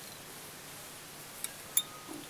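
Quiet room hiss with two small, sharp clicks near the end, the second louder.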